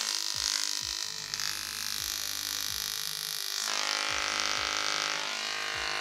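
Handheld Tesla coil (a 3D-printed Tesla gun) running with its arc striking a compact fluorescent bulb and lighting it. The result is a loud, steady electrical buzz that changes tone about two-thirds of the way through and stops near the end.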